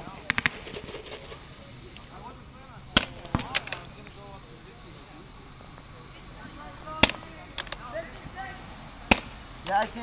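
Paintball markers firing: sharp pops in a quick string just after the start, one loud shot about three seconds in followed by a short burst, then scattered single shots. Faint shouting between the shots.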